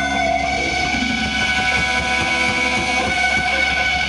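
Sustained electric guitar feedback drone through the amplifiers: several steady high tones held over a low hum, with no drumming.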